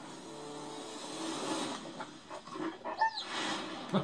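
Closing sound of a TV trailer played back in a room: a noisy rush that swells about a second and a half in and then dies away, followed by a few short clicks and brief faint sounds near the end.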